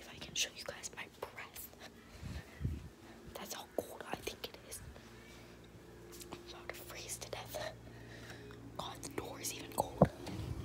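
Fleece robe rustling and rubbing against a handheld phone's microphone, with scattered handling clicks and knocks. A steady low hum joins from about four seconds in.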